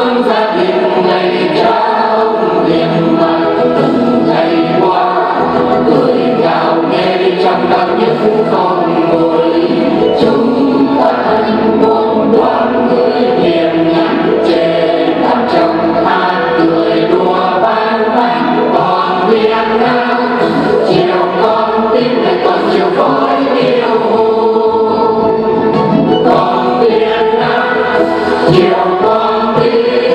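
Mixed choir of men and women singing a Vietnamese song together, continuous and full-voiced.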